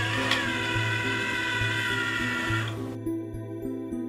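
Background music with a steady bass line, over which the small electric drive motors of a wheeled plant-carrying robot whir with a thin whine, cutting off abruptly about three seconds in.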